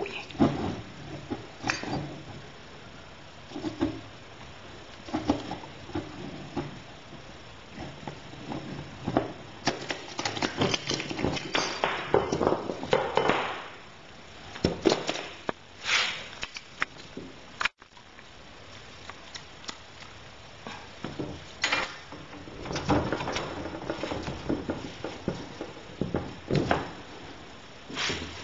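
Hand tubing cutter being turned around copper tubing, with scraping stretches as it cuts, and clicks and knocks of the tool, copper pipe and copper elbow fittings being handled on a wooden board.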